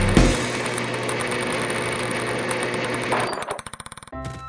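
Cartoon machine sound effect: a steady mechanical whirring rattle that breaks up into rapid stutters and fades away near the end.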